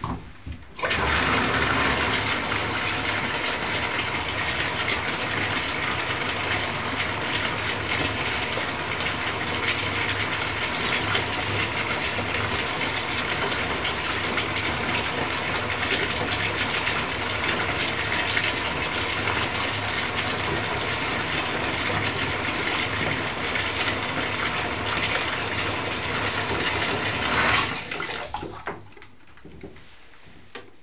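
Water running steadily from a tap into a bathtub. It comes on suddenly about a second in and tails off a couple of seconds before the end.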